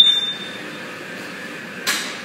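A short, high electronic beep from the computerized flat knitting machine's touchscreen control panel as a key is pressed, followed by the steady mechanical running noise of the knitting machine.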